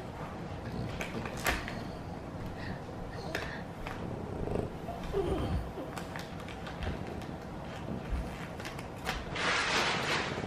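French bulldog sniffing and nosing at a paper-wrapped present: faint snuffling with scattered crinkles of wrapping paper and a few soft thumps, and a louder rustle near the end.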